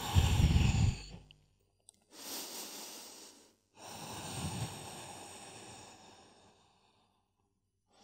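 A person breathing deeply: three long, audible breaths, the first carrying a low sigh-like sound and the last the longest, held in the folded-forward sleeping pigeon stretch.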